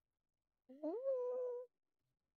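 A single vocal call about a second long, rising in pitch and then holding steady.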